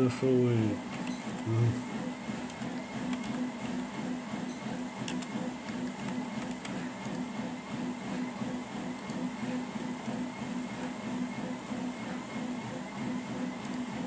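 A steady low machine hum with an even, regular pulse, and a few faint clicks over it.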